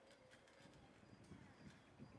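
Near silence: faint outdoor room tone with a few faint, irregular soft knocks in the second half.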